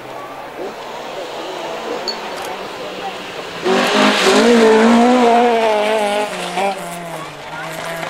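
Historic rally car's engine coming down a gravel stage and passing close by, loudest for a few seconds from about four seconds in, its pitch wavering with the throttle, then fading as it goes away.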